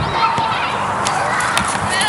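Raised, high-pitched shouts and calls from youth soccer players and sideline spectators during live play, with two short sharp knocks in the second half.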